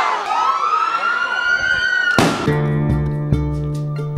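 A long, high, siren-like tone dips, then rises slowly and holds for about two seconds. A sharp crack cuts it off just after two seconds in, and acoustic guitar music starts.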